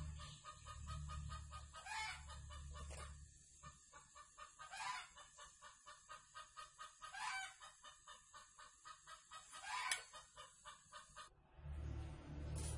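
A handheld butane gas torch burns with a low steady rush for the first three seconds or so, then stops. Throughout, poultry cluck faintly in quick rhythmic pulses, with a short louder call every two to three seconds.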